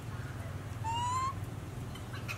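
A single short animal call, about half a second long, a little under a second in: one clear, slightly rising tone with overtones. A steady low hum runs underneath.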